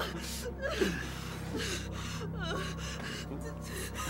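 A terrified woman sobbing and gasping for breath, her voice breaking into short wavering whimpers, over a low steady hum.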